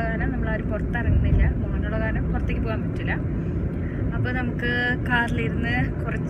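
Steady low road and engine noise inside a moving car's cabin, under a woman talking.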